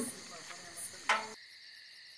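Crickets chirping faintly and steadily, with a brief vocal sound about a second in.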